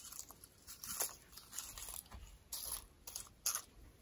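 Potato chips crunching and crackling as they are crushed by hand and crumbled onto a chili cheese dog, in several irregular bursts, the strongest about a second in and near the end.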